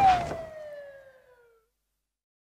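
The end of a hip hop track. The beat cuts out and a lone siren-like tone slides slowly downward in pitch, fading away about a second and a half in.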